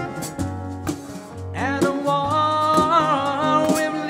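Live acoustic music: two acoustic guitars strummed in rhythm, with a voice coming in about one and a half seconds in, holding long sung notes.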